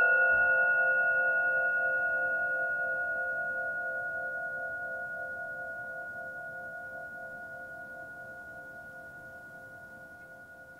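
Several antique Tibetan cup singing bowls from a matched diatonic set ringing together as a held final chord, slowly fading away; one of the tones pulses with a slow beat.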